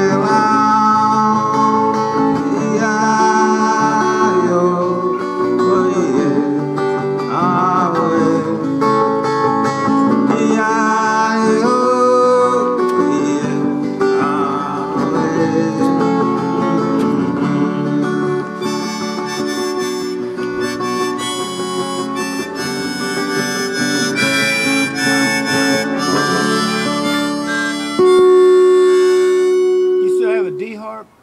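Harmonica playing an instrumental break over strummed acoustic guitar, with held and bending notes, ending on one long loud held note near the end.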